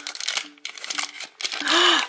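Thin plastic wrapper crinkling and rustling in the hands as a small mystery figurine is pulled out of it, in irregular bursts of rustle.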